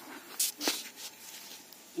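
Weeds being pulled by a gloved hand from wet soil among cassava plants: two short rustling rips close together about half a second in, then only a low background.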